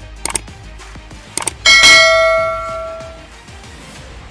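Subscribe-button animation sound effect: two quick clicks, then a bright notification-bell ding that rings out and fades over about a second and a half, with faint background music underneath.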